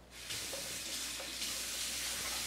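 A steady hiss that comes in suddenly, with a couple of faint small knocks under it.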